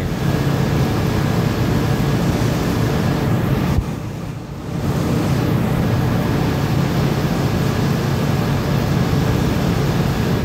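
Steady mechanical running noise with a low hum, broken by a click and a brief drop about four seconds in.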